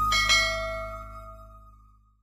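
Two quick clicks, then a bell chime ringing out and dying away: the sound effect of a subscribe-and-notification-bell animation. Background music fades out underneath.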